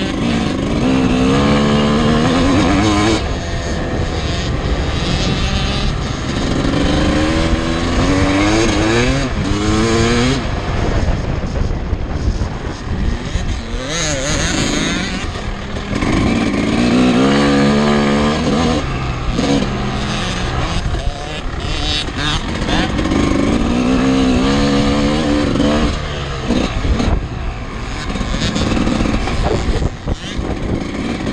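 Motocross bike engine revving up again and again in rising sweeps as it pulls out of turns and down straights, backing off in between.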